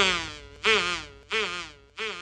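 Cartoon insect buzzing sound effect in short repeated bursts, one about every two-thirds of a second, each with a wobbling pitch that fades away.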